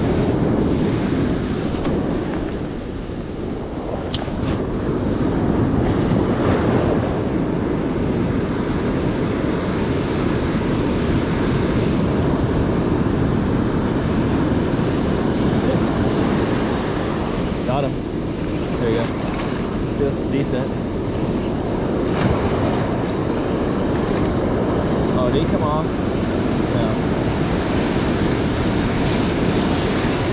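Ocean surf breaking and washing up the sand at the shoreline, a steady rushing, with wind buffeting the microphone.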